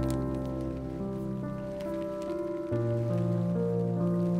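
Lofi hip hop music: soft, slow chords that change every second or so, with a deep bass note under the first part, over a light crackling texture.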